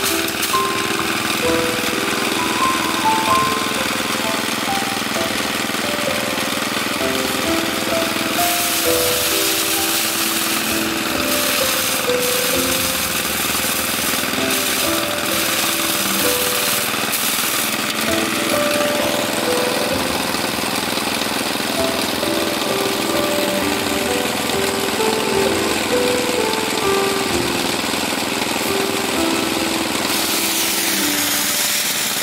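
Mini rice threshing machine running steadily, its small motor and spinning drum making a continuous noise as bundles of rice stalks are held against it. Background music with a melody of short notes plays over it.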